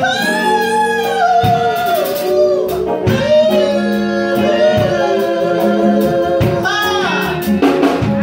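A woman singing into a microphone with a live band, electric bass and drums under her voice. She holds long notes that bend and waver.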